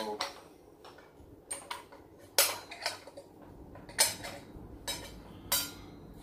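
Sharp metallic clinks and clicks as the blade and blade guard of a miter saw are handled, about half a dozen, the loudest about two and a half, four and five and a half seconds in.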